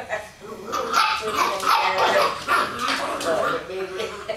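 Small dogs yipping and barking as they play, a quick run of short calls.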